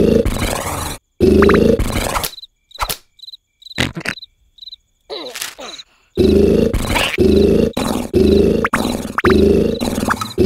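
Cartoon snoring: loud, rough snores about a second long, thinning out in the middle, then coming faster from about six seconds in. Crickets chirp in the gaps.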